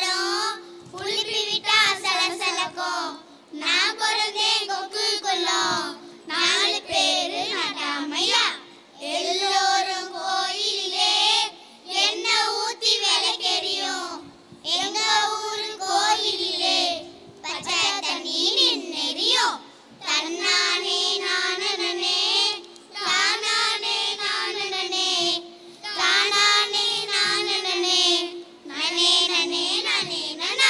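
A group of children singing an action song together into stage microphones, in short phrases broken by brief pauses.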